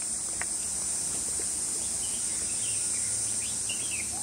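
Steady, high-pitched chorus of insects buzzing in the trees, with a few faint bird chirps in the second half.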